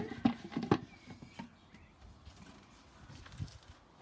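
A few light knocks and clatters in the first second and a half, then a faint, quiet background with a single click near the end: handling noise around the toilet.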